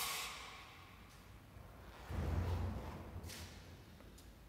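Two rushes of noise right at the phone's microphone: a sudden one at the start that fades over about a second, and a lower, rumbling one about two seconds in.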